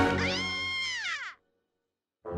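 A cartoon character's high-pitched whimpering cry that holds, then falls in pitch and breaks off about a second and a half in, followed by silence.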